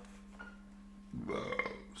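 A man burps once, a short, rough belch starting a little over a second in.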